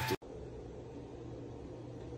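Steady low hum with an even hiss of background noise, beginning abruptly just after the start.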